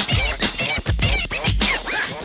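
Hip hop track with turntable scratching: quick back-and-forth record scratches sweeping up and down in pitch over a deep repeating beat.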